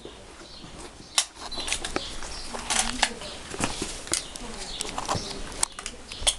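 Irregular sharp knocks and rustles close to the microphone, with birds chirping in the background.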